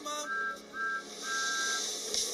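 Thomas the Tank Engine's two-tone steam whistle blowing three times, two short toots and then a longer one, as he sets off. A hiss of steam rises near the end.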